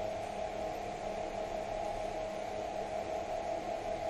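Electric skateboard hub motor spinning unloaded at top speed, about 2,130 rpm, starting suddenly and then running as a steady even hum.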